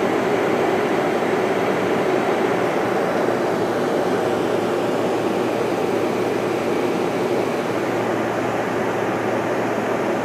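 Cabin noise of a Canadair Regional Jet in flight: the steady rushing roar of its jet engines and the airflow, heard from a window seat inside the cabin.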